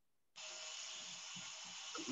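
Dead silence that gives way, about a third of a second in, to a steady faint hiss: the background noise of a microphone opening on a video-call line.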